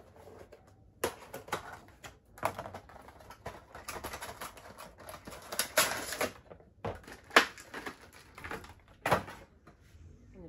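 A Funko Pop figure being taken out of its cardboard box and clear plastic insert: an irregular run of crackles, clicks and rustles of cardboard and plastic, with a few louder snaps.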